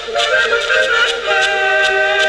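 A folk tune played on horns, a small brass horn together with wooden horns, over a steady rhythmic pulse, with longer held notes in the second half.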